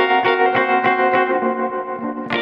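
Instrumental intro of a slow love song: guitar chords picked in a steady pulse, about three to four strikes a second, thinning out near the end.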